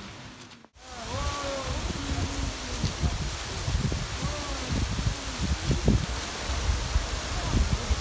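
Steady rush of a tall waterfall falling down a rock cliff, starting just under a second in, with wind buffeting the microphone in irregular low gusts.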